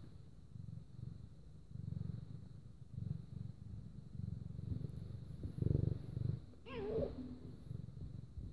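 A long-haired domestic cat purring while being stroked, a low purr that swells and fades in repeated pulses. A brief rising-and-falling call comes near the end.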